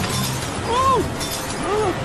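Cartoon storm sound effects: glass breaking and tinkling in a rush of noise, with whistling tones that rise and fall twice.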